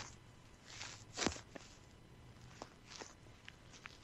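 A quiet lull with a few faint, short clicks and soft scuffs scattered through it, about half a dozen in all, the loudest a little after a second in.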